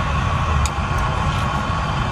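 Steady low rumble with a constant thin hum above it, typical of a propane-fired glass furnace's burner and blower running, with a couple of faint clicks about half a second apart.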